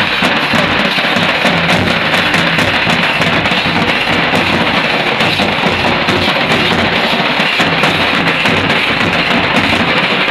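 Loud folk dance music driven by nagara drums beating a steady, fast rhythm, dense and crowded on the recording.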